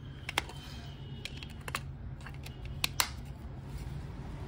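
Plastic keypad mobile phone being handled and its back cover snapped into place: a scattering of sharp plastic clicks and taps, the loudest two close together about three seconds in.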